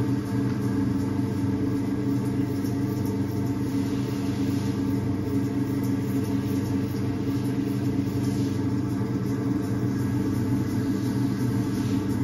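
Electric potter's wheel motor humming steadily as the wheel spins, with faint swishes of wet clay under the potter's hands.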